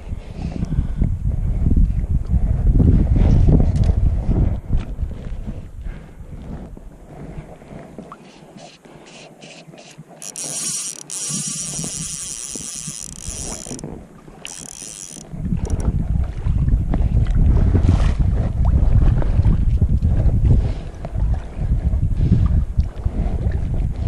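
Wind buffeting the camera microphone in gusts of heavy low rumble that die down for several seconds in the middle. A few seconds of hiss, likely the river's flowing water, come through while the wind is calm.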